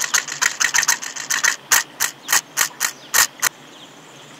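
A rapid run of sharp clicks, about nine a second, that slows to about four a second after a second and a half and stops abruptly near the end.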